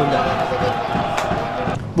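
Pitch-side sound of a football match: a steady noise with one held tone running through it, which cuts off shortly before the end.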